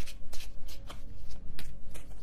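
A tarot deck being shuffled by hand: a quick, uneven run of sharp card slaps.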